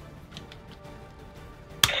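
Light plastic handling clicks as a green lion toy is fitted onto a Voltron figure's shoulder, then one sharp snap near the end as it locks into place and the figure's sound effects start.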